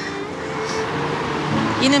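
Steady road traffic noise under a faint held note of background music; a woman's voice begins near the end.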